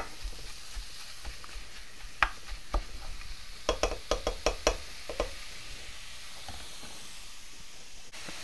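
Ground beef sizzling steadily as it browns in a frying pan, with a meat chopper scraping and tapping against the pan: a couple of taps a little after two seconds in, then a quick run of about six taps around four seconds in.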